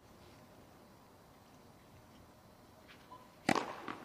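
Hushed tennis stadium, then a tennis racket striking the ball hard on a serve about three and a half seconds in, a single sharp crack, with a faint tick or two just before it.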